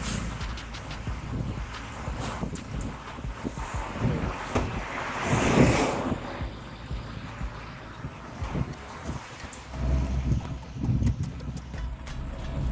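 Wind rushing over the microphone in a moving Maruti Gypsy, over a low road rumble, swelling to a louder gust about five seconds in.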